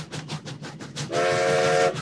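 Train horn sounding a steady chord of several notes, starting about halfway in with a brief break near the end, after a faint rapid clatter.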